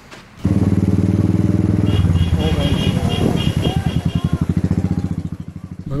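A motor vehicle's engine running with a fast, even pulsing, starting suddenly about half a second in, with people's voices over it from about two seconds in.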